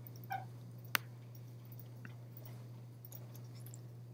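Quiet room tone with a steady low electrical hum, a brief faint sound just after the start and one sharp click about a second in.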